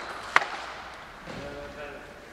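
A single sharp click of a celluloid table tennis ball striking a hard surface, a bat or the table, about a third of a second in.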